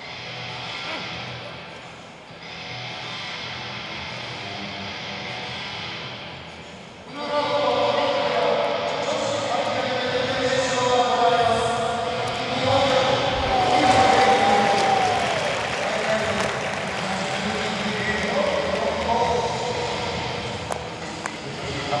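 Athletics stadium crowd and public-address sound during a high jump attempt. It starts as a moderate background, then grows suddenly louder about seven seconds in and stays loud. Pitched, wavering sounds like music or voices run over it, with a long rising-and-falling swell in the middle.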